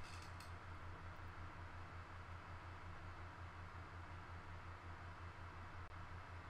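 Faint steady low hum with a light hiss, the background noise of the recording setup, pulsing slightly; a couple of faint clicks just after the start.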